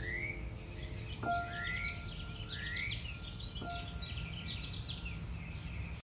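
Birdsong in the closing outro of a lo-fi hip-hop track: repeated rising whistled calls and quick chirps over a low ambient rumble. Two soft musical notes sound, about a second in and again midway, each held briefly.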